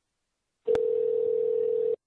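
Telephone ringing tone heard down the phone line: a click, then one steady tone of about a second, which stops just before the call is answered.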